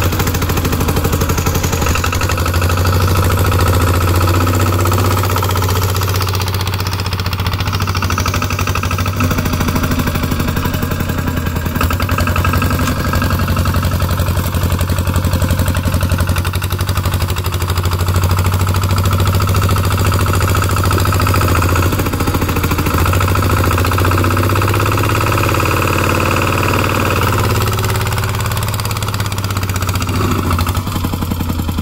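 Two-wheel walking tractor's single-cylinder diesel engine running steadily with a low, rapid chug while under load, pulling a trailer loaded with cassava over rough field soil.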